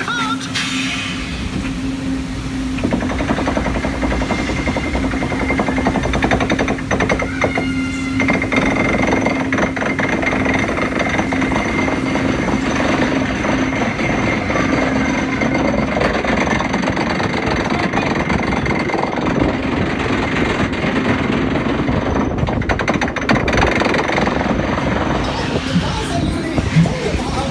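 Log flume boat being carried up a chain-conveyor lift, the lift chain clattering under the hull without a break. A steady low hum runs through roughly the first half.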